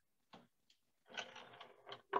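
Faint handling noise from the lid of a 1941 Philco radio-phonograph's wooden cabinet being lifted: a small click, then a brief rustle and knocks.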